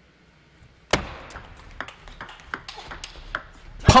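Table tennis rally: the ball clicking sharply off paddles and the table, starting about a second in. About a dozen quick hits follow over the next three seconds until the point ends.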